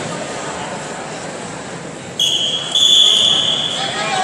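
Referee's whistle blown to start the bout: a short blast about two seconds in, then a longer, louder steady blast that stops just before the end. Arena chatter from the crowd and other mats underneath.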